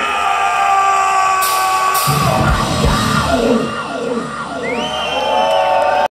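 Live metal band holding a loud ringing chord on electric guitar and bass, with cymbal crashes about a second and a half in and heavy drum hits just after. Yells and whoops from the stage and crowd ride over the sound.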